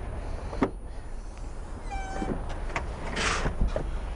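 Car's rear hatch unlatching with a click and lifting open, with a short squeak about two seconds in and a hiss near the end as it rises.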